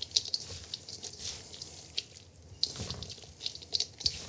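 Hands tossing a mayonnaise-dressed slaw of crunchy vegetables and walnuts in a stainless steel bowl: irregular wet squelches and small crisp crackles.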